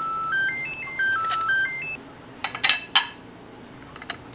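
Electronic alert chime: a quick melody of short beeping notes stepping up and down for about two seconds, then several sharp clinks of ceramic dishes.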